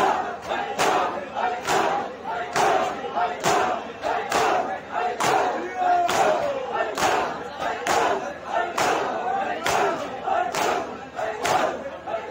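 A large crowd of men doing matam, slapping their bare chests in unison in a steady beat a little more than once a second. Massed voices shout and chant along with the beat.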